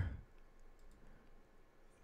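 A few faint, short computer mouse clicks over quiet room tone.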